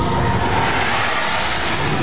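Tower of Terror ride cab moving in the dark, a loud steady rumble and rattle with faint held tones over it.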